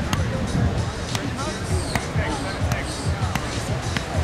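A volleyball being struck by hands and forearms in a rally: several sharp slaps, roughly one a second, over a steady low outdoor rumble.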